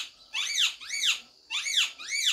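A bird singing: repeated phrases of three quick high chirps, each rising and then falling in pitch, about one phrase a second.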